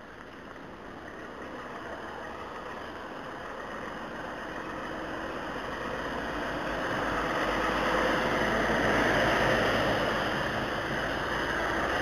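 Road vehicle noise with the hiss of tyres on wet asphalt, growing steadily louder to a peak about three-quarters of the way in, then easing off.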